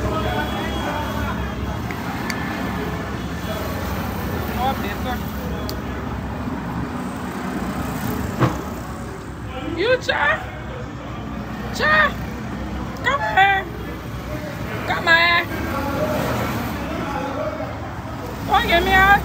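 Several short, high-pitched wordless vocal calls rising and falling in pitch, about five of them in the second half, over a steady low background rumble.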